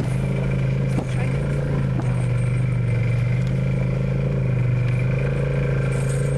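Snowmobile engine running at a steady cruising pitch, heard from the towed passenger sled, with a couple of faint knocks about one and two seconds in.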